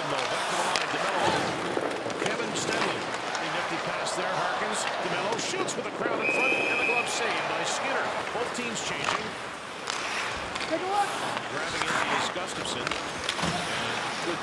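Hockey arena game sound: a steady crowd murmur with sharp clacks of sticks and puck and thuds against the boards throughout. About six seconds in, a brief steady whistle blows, the referee stopping play.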